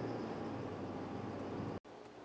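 Steady engine and road noise inside a moving minivan's cabin, a low hum under an even hiss, which cuts off suddenly near the end.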